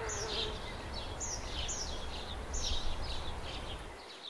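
Park ambience sound effect: small birds chirping in repeated short, falling tweets, several a second, over a low steady rumble. A wavering buzz stops about half a second in, and the whole fades toward the end.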